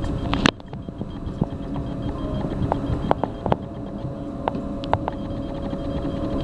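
A door latches shut with a sharp click about half a second in, followed by a steady mechanical hum and rumble with scattered light clicks from the 1911 Otis traction elevator's machinery.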